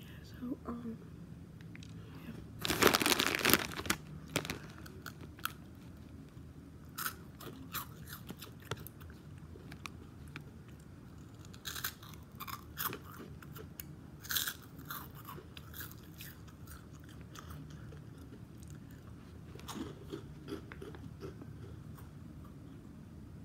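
Close-up biting and chewing of a crunchy piece of food, with one loud crunch about three seconds in and scattered smaller crisp crunches and mouth clicks after it.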